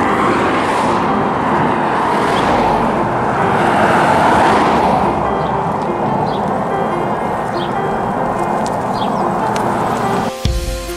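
Road traffic passing on a highway close by: a steady rush of tyre and engine noise that swells to a peak about four seconds in and then eases off.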